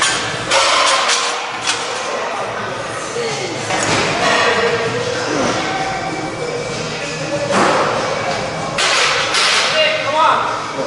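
Gym sounds during heavy barbell back squats. Voices call out over the lift, and there are several loud thuds and clanks from the loaded barbell and rack.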